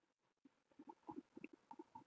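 Near silence: room tone, with a few faint short ticks in the second half.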